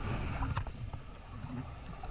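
Muffled low underwater rumble of fast-flowing spring current rushing past a diver's camera, with a few faint ticks.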